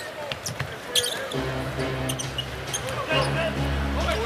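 Basketball game sound: sneakers squeaking and a ball bouncing on a hardwood court. From about a second and a half in, arena music with held low notes plays under it.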